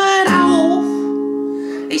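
Acoustic guitar with a capo: a sung note ends over it, then a strummed chord is left ringing and slowly fades.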